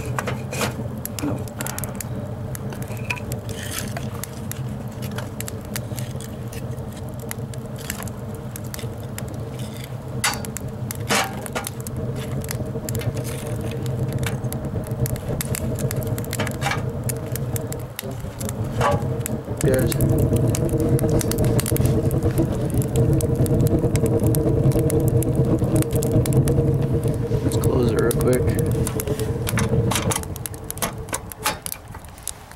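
Wood stove being loaded: split logs knocking against the firebox as they are pushed in through the open door, with the fire crackling. A steady low hum runs underneath and gets louder about twenty seconds in.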